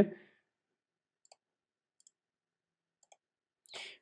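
Three faint, sharp clicks from a computer pointing device, spaced about a second apart, over near silence. The end of a spoken word is heard at the start.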